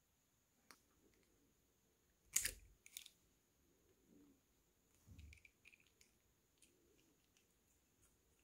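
Small plastic throttle parts handled by hand, mostly quiet: a sharp plastic click about two and a half seconds in and another half a second later, then a soft knock and a few light ticks.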